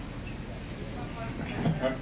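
A lull filled with steady low room noise, with a faint rumble and no distinct events. Near the end a man's voice begins a question.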